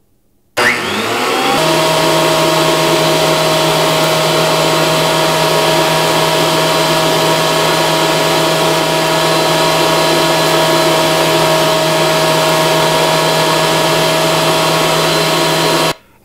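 Ryobi AP1301 thickness planer switched on: the motor and cutterhead spin up with a rising whine in about a second, then run steadily at full speed with a constant high whine over a rushing hiss.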